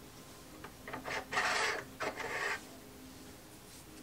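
Dense foam rubbing and scraping against foam as a foam block is pushed into a cutout in a case's foam insert: a few short rasping scrapes about a second in.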